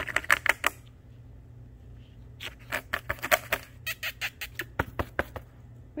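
Quick runs of light clicking taps in three bursts: one right at the start, one about two and a half seconds in, and a third from about four to five and a half seconds.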